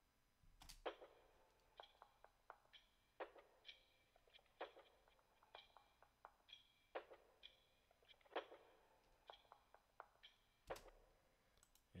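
A sparse electronic percussion loop playing back quietly: short, sharp hits and lighter ticks, some with a brief high ringing tone, in a loose repeating pattern that gives a simple bounce.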